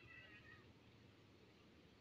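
Faint steady hiss of heavy rain on a street, with a brief high-pitched cry in the first half-second.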